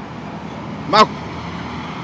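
Steady outdoor background noise, with one brief vocal sound from a person about a second in.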